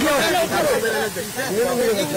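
Several people's raised voices talking over one another, over a steady hiss.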